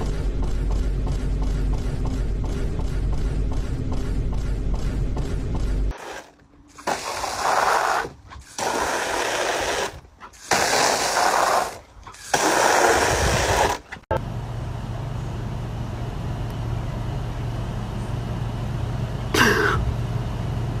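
A garden hose sprays water in four bursts of one to two seconds each, with short gaps between them. Before the bursts there is a steady low rumble with fast, even ticking. After them comes a steady low hum, with a short wavering cry just before the end.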